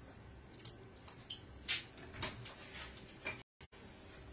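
Wooden kitchen cupboard being opened and things handled in it: a few short knocks and clicks, the loudest about halfway through. The sound cuts out completely for a moment near the end.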